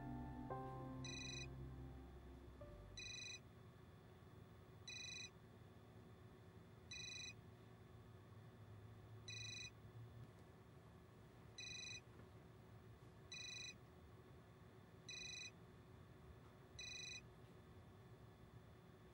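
Mobile phone ringing: a short electronic ring tone repeated nine times, about two seconds apart, unanswered until it is picked up near the end. Soft piano music fades out in the first two seconds.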